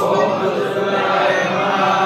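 Many men and boys chanting a Vedic Sanskrit mantra together in unison during an upanayana ceremony, a loud, steady group recitation.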